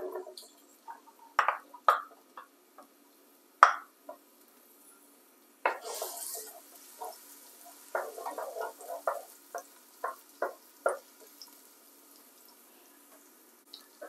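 Chopped onions dropping into a nonstick pot with coconut oil, then a spoon stirring them: a few light knocks in the first seconds, then a run of small scrapes and taps against the pot from about eight to eleven seconds in.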